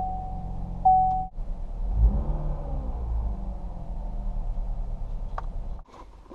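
A Saturn's engine idling steadily just after firing right up, following a check of spark plugs that showed it running lean. A steady electronic tone sounds over it in the first second, broken once.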